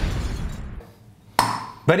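The fading tail of a deep, booming impact sound effect, then a single sharp clink with a brief ring about a second and a half in.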